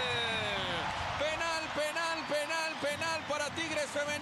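A man's voice on the broadcast: one long falling call, then quick repeated syllables, over steady background noise.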